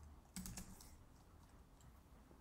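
A few quick, faint keystrokes on a computer keyboard about half a second in, typing a short word, then only faint room noise.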